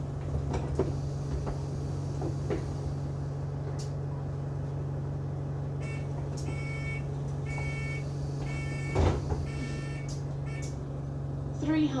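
Interior of an Enviro 200 Dart single-deck bus standing with its engine running as a steady low hum. About six seconds in, the door warning sounds as a short run of beeps, and a loud rushing thud follows about nine seconds in as the doors close.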